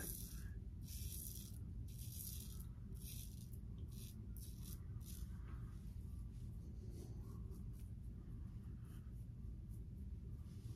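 Double-edge safety razor scraping stubble through shaving lather: a faint, quick rasp repeated over and over in short strokes, thinning out after about five seconds.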